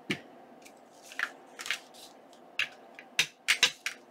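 Clear acrylic stamp block and clear stamps being handled and pressed onto an ink pad and paper: several light, sharp plastic clicks and taps at irregular intervals, coming closer together near the end.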